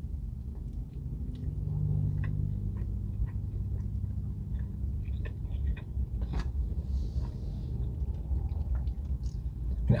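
Close-miked chewing of a bite of chili cheese hot dog: soft, sparse wet clicks of the mouth and jaw, with a brief low hum about two seconds in, over a steady low rumble.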